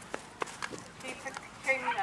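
A galloping horse's hoofbeats on turf: a few soft, irregular thuds. A commentator's voice starts near the end.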